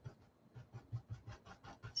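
Paintbrush stroking wet acrylic paint on a canvas, blending it: a faint, quick run of short scratchy strokes, about five or six a second.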